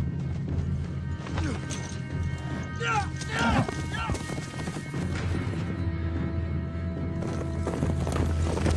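Galloping horse hooves over a dramatic film score with a low sustained drone; about three seconds in, a man shouts and a horse whinnies.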